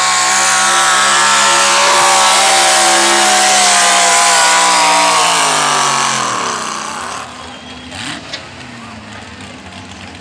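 Pickup truck's engine running at high revs under full load as it drags a weight-transfer pulling sled. It holds steady for about six seconds, then the revs fall away quickly as the pull ends and the truck stops.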